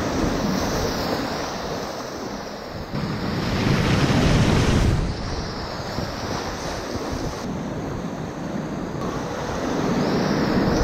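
Whitewater rapids rushing around a kayak as it runs a rapid. The steady rush of water grows louder about three seconds in and eases back near five seconds.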